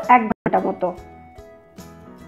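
A woman's voice speaking for about the first second, then soft background music of plucked notes.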